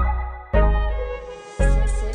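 Hip-hop instrumental beat: deep bass notes starting sharply and fading, about one a second, under a sustained melody, with a high crisp percussion layer coming in near the end.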